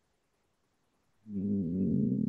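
Near silence, then past halfway a man's low, drawn-out hesitation hum ('mmm') lasting about a second, the sound of a speaker searching for his next words.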